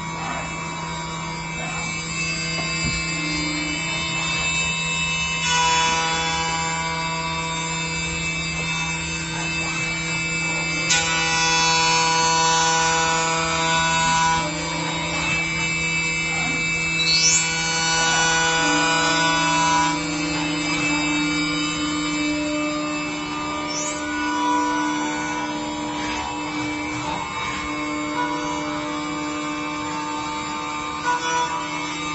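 Hermle C-600U 5-axis CNC machining centre milling metal: the spindle and an end mill cutting under coolant make a steady whine of several tones that shift in pitch in steps a few times, with two short rising whines.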